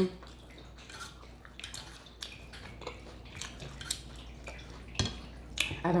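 Plastic fork clicking and scraping against a salad tray while picking up salad leaves: a scatter of small irregular clicks, with a sharper knock about five seconds in.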